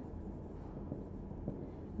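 Marker pen writing on a whiteboard: faint strokes and a couple of small ticks over a low steady room hum.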